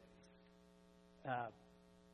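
Steady electrical mains hum, a low drone with a stack of even overtones, with a man's brief "uh" about a second in.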